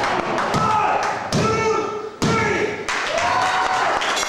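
Two sharp thuds about a second apart from wrestlers grappling on the ring mat, with shouting voices throughout.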